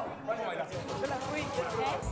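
Dance music from a house party playing with several voices talking or singing loudly over it; the deep bass is largely missing for these seconds.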